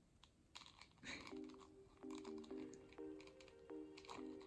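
Faint background music: soft held notes in a slow stepwise melody, coming in about a second in. A few light plastic clicks from handling the doll sound over it.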